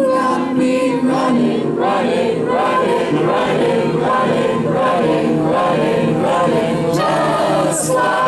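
Live song performance: voices singing a wordless, wavering melody over acoustic guitar and a sustained backing tone.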